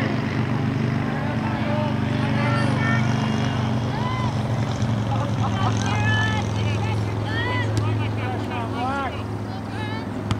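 Short, pitched shouts and calls from players and spectators during play, coming thicker in the second half. Under them runs a steady low mechanical drone.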